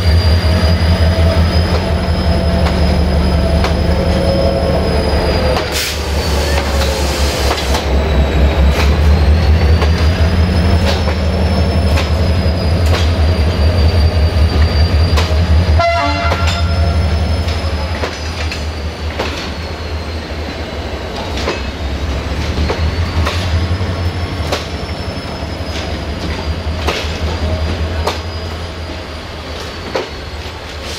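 CFR Class 65 'Jimmy' diesel-electric locomotive, an LDE2100 re-engined by General Motors, shunting passenger coaches with a steady deep engine rumble. High wheel squeal wavers up and down throughout, with frequent clicks of wheels over rail joints. A brief sharp sound comes about sixteen seconds in, and the sound fades somewhat in the second half as the train moves away.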